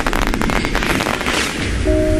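Firework sound effect: a shower of sparks crackling and fizzing over a low rumble, thick with sharp crackles. Near the end, bell-like chiming notes begin.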